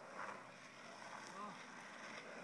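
Faint steady rolling of longboard wheels on asphalt, with a brief faint voice about a second and a half in.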